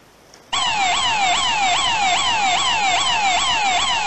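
Electronic alarm sound effect: a loud whooping tone that sweeps quickly up and slides back down about twice a second, starting about half a second in.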